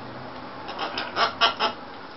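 Pet macaw giving a quick run of about five short calls, starting about a second in.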